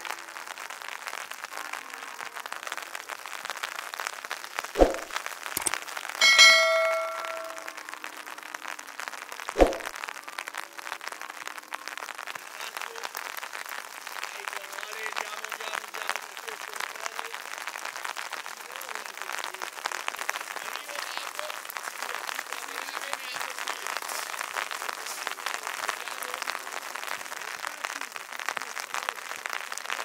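Footballs kicked on a training pitch: two sharp thumps about five seconds apart, and between them a loud metallic clang that rings for about a second and a half. A steady hiss runs underneath, with faint voices later on.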